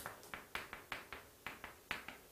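Chalk tapping on a chalkboard while writing: a quick, uneven series of short, sharp taps, about five a second.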